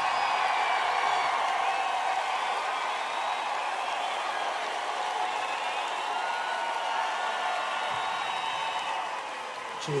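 Large concert crowd cheering and screaming at the end of a song, with drawn-out high shouts over the mass of voices; the noise eases slowly toward the end.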